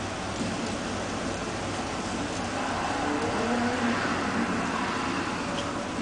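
Steady motor-vehicle engine noise, with short wavering changes in pitch.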